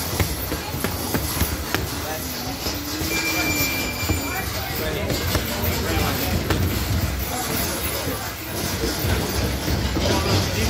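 Boxing gloves striking focus mitts, short knocks coming at irregular intervals over a steady noisy background.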